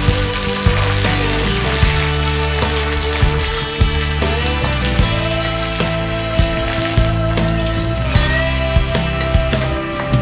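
Oil sizzling in a wok as onions, curry leaves and dried red chillies fry, with a steel ladle clicking and scraping against the pan about once a second as it stirs. Background music plays throughout.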